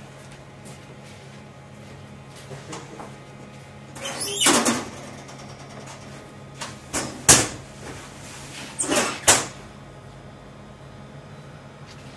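Bakery deck oven being loaded: a long scraping slide about four seconds in, then a sharp bang and a few more clattering knocks, as a baking tray goes into the stone-hearth oven and the oven door is worked. A steady low hum runs underneath.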